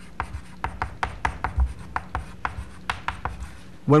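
Chalk writing on a blackboard: an irregular run of short taps and scratches, several a second, as an instruction is written out.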